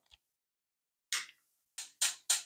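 Two sharp ticks a little under a second apart from a gas hob's push-and-turn knob and spark igniter as a burner is lit.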